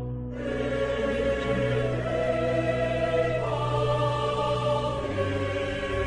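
Choral music: voices holding long sustained chords over a low steady bass. The chord changes about halfway through and again near the end.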